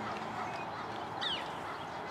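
Steady outdoor background noise with a short, faint bird call a little over a second in.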